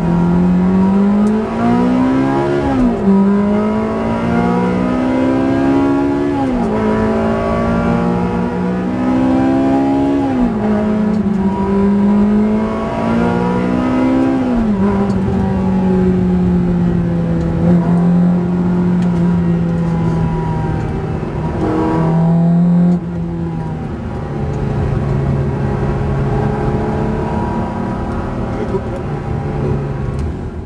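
Ferrari 360 Modena's 3.6-litre V8 heard from inside the cabin, revving up and dropping sharply at each upshift of its F1 paddle-shift gearbox, four times a few seconds apart. In the second half it holds a steadier engine speed.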